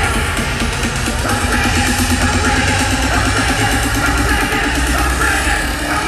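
Loud electronic dance music played over a festival sound system, heard from within the crowd: heavy, constant bass with a fast, repeating synth note starting about a second in.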